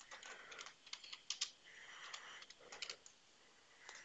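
Faint typing on a computer keyboard: a few short runs of keystrokes entering a short command at the prompt.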